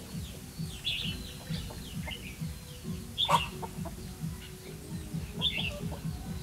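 Red-whiskered bulbuls singing four short, bright phrases, the loudest about midway, over a low, regular throbbing in the background.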